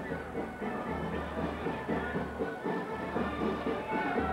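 A marching band playing, its low bass notes sounding in blocks under the tune.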